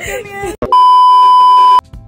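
A loud, steady, high electronic bleep tone laid over the audio in editing, the kind used to censor a word, lasting about a second and cutting off abruptly. It follows a moment of women's laughing talk.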